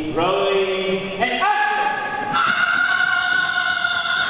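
A loud voice holding long, steady notes that step up in pitch three times, like chanting or a sustained cry.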